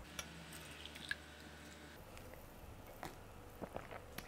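Faint, scattered clicks and taps of a glass jug and wine glass as grape juice is poured, then a couple of soft sips of juice near the end.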